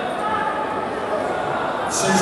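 Indistinct voices of people talking in a large sports hall, a general murmur with no single clear speaker.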